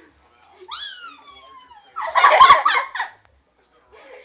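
An animal's calls: a drawn-out cry that jumps up in pitch and then slides slowly down, followed about a second later by a loud, fast-pulsing, rattling call lasting about a second.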